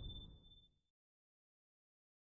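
The tail of an intro whoosh sound effect with a thin high tone, fading out within the first half second, then dead silence.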